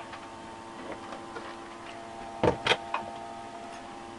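Homemade pulse motor generator running with a steady hum of several tones, with three sharp clicks about two and a half seconds in as wires and clips are handled.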